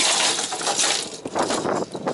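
Hard plastic fishing lures and their metal treble hooks clattering and clinking as a heap of them is tipped out of a plastic tackle box onto a hard surface.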